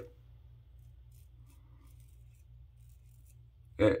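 Faint, scratchy strokes of a Gem Damaskeene safety razor's blade cutting stubble through shaving lather on the cheek.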